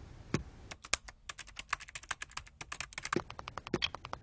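Sharp clicking. After a single knock, a fast, even run of about ten clicks a second starts about a second in, and near the end heavier knocks join it about every half second.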